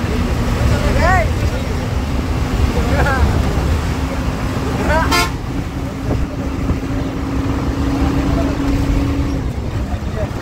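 Intercity coach's engine and road noise heard from inside the cabin while under way, a steady rumble with a held hum that stops near the end. Brief rising-and-falling tones come about a second, three and five seconds in, with a sharp knock around five seconds.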